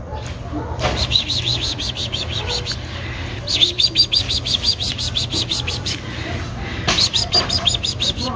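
A bird chirping in fast, even runs of about nine notes a second, in three bursts of a couple of seconds each.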